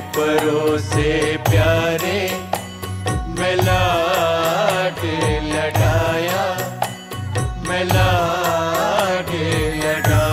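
A Sikh Gurbani shabad sung as a devotional hymn, with melodic accompaniment over a steady, regular drum rhythm.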